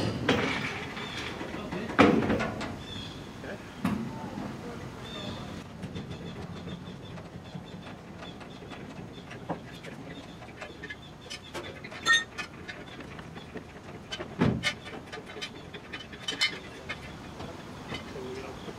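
Loud metal clunks and knocks, with rattling and rolling between them, as a stripped Triumph GT6 body shell on a wheeled dolly is heaved and rolled forward across an aluminium trailer deck. The sharpest knocks come right at the start and about two seconds in, with more around twelve and fourteen seconds in.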